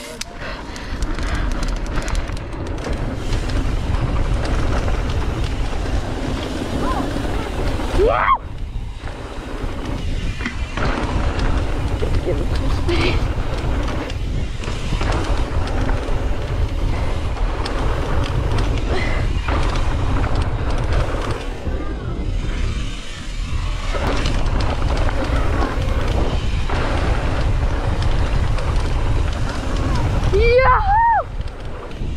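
Mountain bike riding fast down a dirt trail: knobby tyres rolling over loose dirt and wind buffeting the camera's microphone, a steady deep rumble. It eases briefly about eight seconds in and again around twenty-three seconds.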